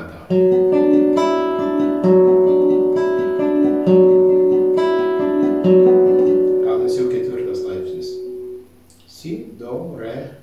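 Classical guitar playing a Bm7 chord, picked one string at a time. A low bass note comes about every two seconds with higher strings in between, and all the notes ring on together before fading out near the end.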